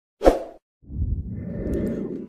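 A short whoosh-and-thump transition sound effect about a quarter second in. After a brief gap it is followed by a steady low noise of room background.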